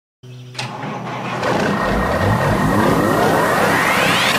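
Sound-effect build-up for an animated logo intro: after a brief silence, a low rumbling sweep grows louder and rises steadily in pitch.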